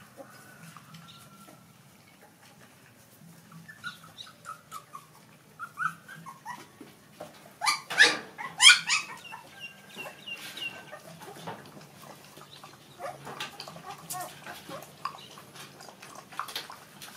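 Puppies whimpering and squealing in short high-pitched calls, with two loud yelps close together about halfway through.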